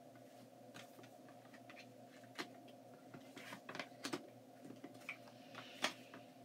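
Tarot cards being handled and laid down: a scatter of light, irregular clicks and taps, the sharpest just before the end, over a steady low hum.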